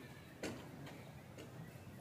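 Faint, sharp ticks repeating at a fairly even pace, roughly one every three-quarters of a second, over a low steady hum.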